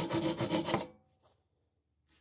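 Hacksaw cutting a square metal tube held in a bench vise: quick, rhythmic back-and-forth rasping strokes that stop a little under a second in, leaving near silence.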